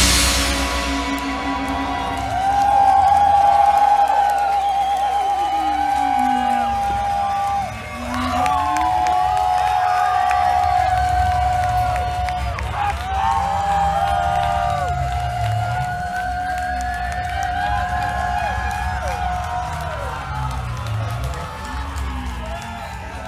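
A loud electronic rock song cuts off at the start. Then held, wavering synthesizer tones and sliding pitch glides play over a low bass rumble, while a crowd cheers and whoops.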